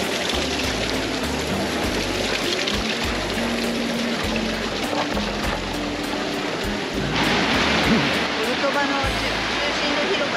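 Water splashing from a square's ground-level fountain jets, with music and people talking. The splashing grows louder about seven seconds in.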